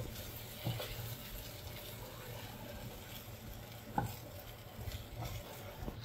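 A black spatula stirring and tossing steamed rava balls in a nonstick frying pan, with a faint steady sizzle of frying. Soft taps of the spatula on the pan come about a second in and again near four seconds.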